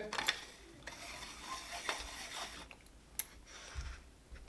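Head of a stainless-steel iSi cream whipper being screwed onto its canister: faint scraping of the metal threads, then a short sharp click a little after three seconds.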